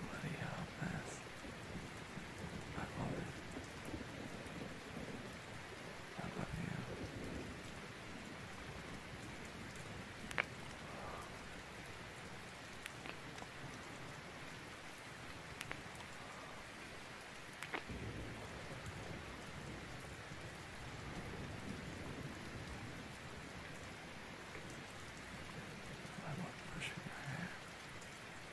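Steady rain ambience, with low rumbles of thunder during the first several seconds and a few sharp clicks scattered through the middle.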